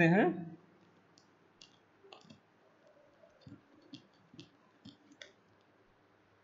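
A series of faint, irregular clicks and taps, about ten in four seconds, made while a plot is being drawn.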